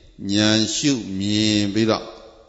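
A Buddhist monk chanting into a microphone: a man's voice drawing out two long syllables on a steady pitch, in a recitation tone rather than ordinary speech.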